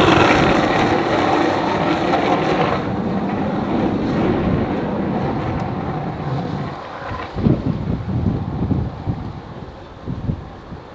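Skateboard wheels rolling over rough asphalt: a steady gritty rolling noise, loud at first, that slowly fades over the following seconds. In the last few seconds it gives way to irregular low rumbles.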